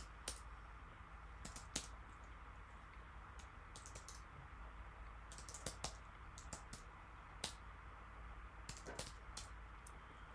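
Computer keyboard keystrokes: faint, sharp clicks in short irregular bursts of typing with pauses between, as terminal commands are typed.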